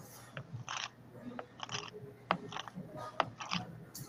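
Scattered kitchen handling sounds: a few sharp clicks and short scraping rustles as utensils and containers are moved about. No blender motor is running.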